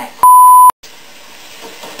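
A loud, steady high-pitched censor beep, about half a second long, bleeping out a word and cutting off sharply. After it, a steady hiss of chicken-fried steak frying in oil in a cast iron skillet.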